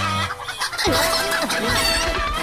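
A flock of chickens clucking, many short calls overlapping, starting about a second in.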